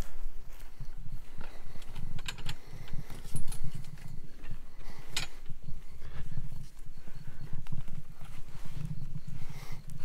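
Footsteps of a person walking through grass and brush: uneven thuds with rustling and scattered clicks from handled gear.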